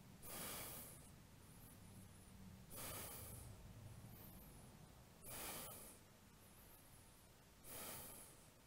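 A man breathing audibly while holding a deep yoga bind: four short, faint breaths about two and a half seconds apart, over quiet room tone.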